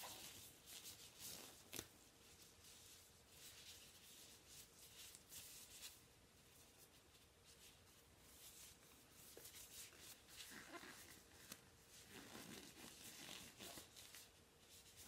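Faint rustling and crinkling of thin plastic disposable gloves being pulled on, in irregular small scrapes and clicks.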